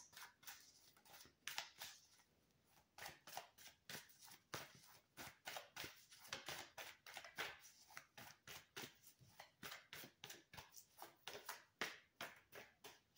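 Tarot cards being shuffled by hand, quietly: a string of soft, irregular card clicks and slaps, several a second.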